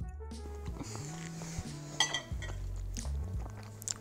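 A fork clinking and scraping against a bowl of pasta, with two sharp clinks about two seconds in, over quiet background music of low, held notes.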